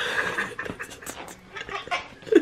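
Short, breathy vocal sounds from a person, several in quick succession, with a stronger one at the very start.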